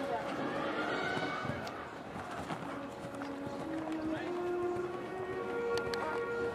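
Arena ambience: distant crowd chatter and background music over the public-address system, with held notes coming up about four seconds in.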